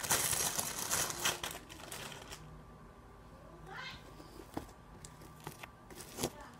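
Plastic bag crinkling and rustling as a large slime is handled in it, dying down after about two seconds. Later comes one short rising tone and a few soft clicks.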